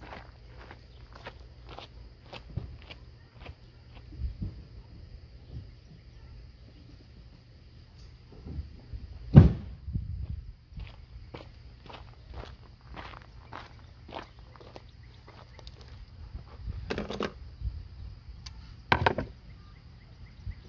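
Footsteps and scattered light clicks and knocks as a person walks off and comes back, with a loud thud about nine seconds in and heavier knocks near the end. A faint steady high-pitched tone runs underneath.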